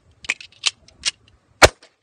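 A 1911 pistol fires a single shot about one and a half seconds in, by far the loudest sound. Three fainter sharp ticks come before it.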